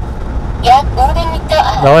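A recorded voice announcement from the electronic road-test guidance device, the cue that tells the driver when to switch on the indicator, starting about half a second in. Underneath it is the steady engine and road noise inside a truck's cab.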